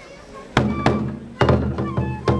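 Traditional Japanese folk music accompanying a kenbai sword dance: sharp drum strikes in an uneven beat, starting about half a second in, with thin high flute tones sounding between them.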